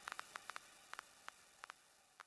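Faint static hiss with irregular sharp crackling clicks, slowly fading out at the tail of an electronic track's outro.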